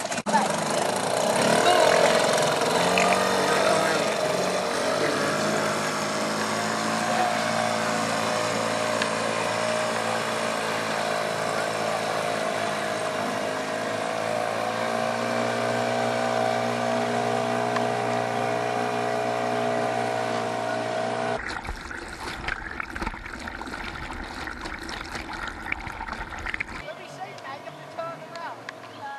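Small outboard motor on an inflatable dinghy running steadily as the dinghy pulls away, its pitch wavering up briefly about a second in. At about 21 seconds it gives way abruptly to a rough, lower rumble like wind on the microphone.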